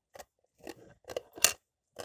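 Ice being crunched between the teeth: a string of short, sharp crunches, the loudest about one and a half seconds in.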